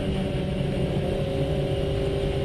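Volkswagen GTI rally car's engine heard from inside the cabin, running at a steady pitch over the low rumble of tyres on a gravel road.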